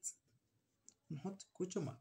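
Pen writing on a paper workbook page: faint strokes with a short click about a second in. A woman's voice comes in during the second half.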